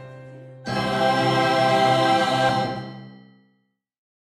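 A choir sings one loud held chord that comes in suddenly over a fading piano note and then dies away.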